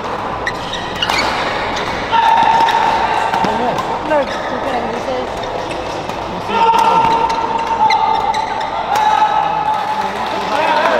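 A badminton doubles rally: sharp racket strikes on the shuttlecock and rubber court shoes squeaking on the synthetic floor, echoing in a sports hall, under spectators' voices. A steady high tone is held twice, for about two and three seconds.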